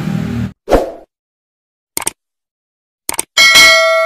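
Subscribe-button animation sound effects: a short pop, then two quick pairs of clicks, then a bright bell ding, the loudest sound, which rings on and fades out.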